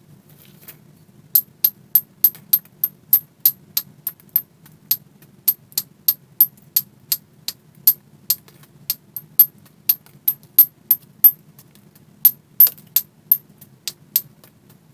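Small hand-held knapping tool tapping along the edge of a Keokuk chert preform, making sharp, ringing clicks about three a second. It starts about a second in and goes on steadily, with a few louder strikes near the end.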